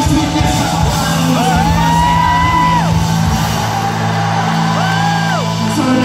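A live worship band plays in a large, echoing hall over a steady low sustained bass and keyboard bed. A high note glides up, holds for about a second and a half and falls away, and a shorter one follows near the end.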